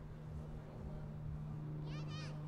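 Steady low hum with faint low rumble underneath. Right at the end comes a short, high-pitched wavering cry.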